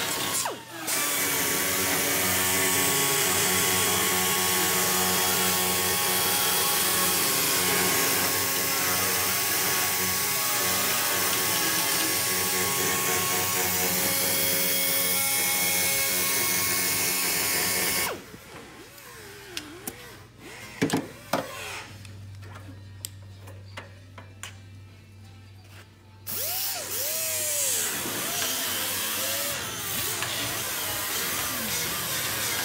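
A handheld air tool running steadily at full speed, then cutting off after about eighteen seconds. A quieter stretch follows with a few knocks and a low hum, and the tool runs again for the last few seconds.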